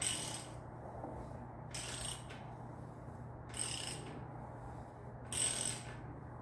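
Ratchet wrench worked in strokes on a bottom bracket tool, its pawl clicking in four short bursts about two seconds apart as a bottom bracket cup is threaded into a bike frame's shell. A low steady hum runs underneath.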